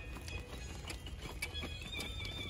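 Scattered light knocks and clicks from a group dancing on stony ground, over a steady low rumble.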